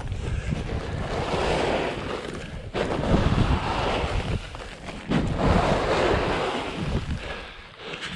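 A push broom sweeping snow off the plastic film of a high tunnel greenhouse, in several long strokes with short breaks between them.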